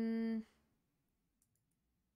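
The tail of a steady hummed "mm" from a person's voice, ending about half a second in. Near silence follows, with a few faint clicks about halfway through.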